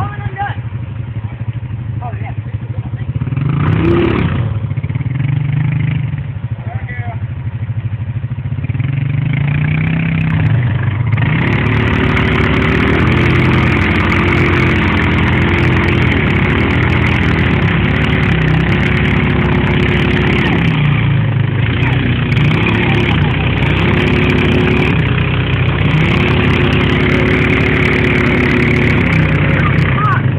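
Single-cylinder ATV engines of a Yamaha Grizzly 350 and a Honda Rancher running under load in a tug-of-war pull. They run lower for the first ten seconds or so, with a short rev about four seconds in. From about eleven seconds in they rev hard, the pitch rising and falling again and again as they strain against each other.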